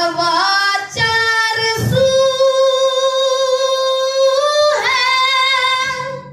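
A single high voice singing a devotional naat, holding one long steady note for nearly three seconds in the middle after a few short sung phrases.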